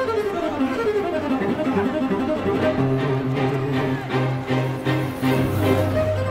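Music of bowed strings, cello and violin, playing a moving melody. A low bass line comes in about halfway and gives way to one long held low note near the end.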